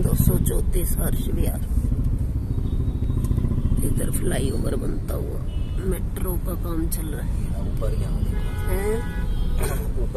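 Heavy traffic in a jam, heard from inside a car: a steady low rumble of idling engines, with motorcycles close around.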